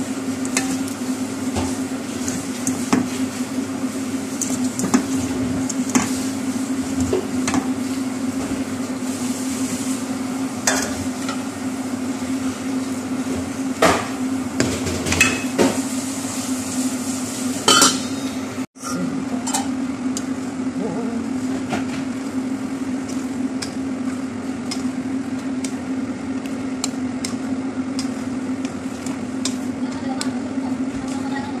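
A utensil stirring shredded cabbage in a metal pot, with scattered clicks and knocks against the pot over sizzling. The clicks come thickest about two thirds of the way through. A steady low hum runs underneath.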